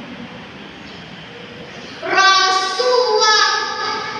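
A girl's voice declaiming a Malay poem into a microphone: a pause of about two seconds, then a loud, drawn-out, sing-song line.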